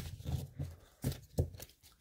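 Pokémon trading cards being handled and flipped through by hand: a soft rustle of cards sliding, then a couple of sharp card snaps about a second in.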